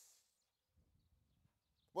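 Near silence between spoken phrases, with only a faint low background rumble.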